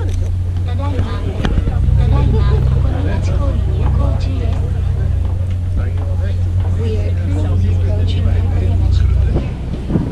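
Steady low drone of a pirate-style sightseeing ship's engine, heard aboard, with passengers talking in the background.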